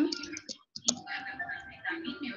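Computer keyboard keys clicking in quick typing.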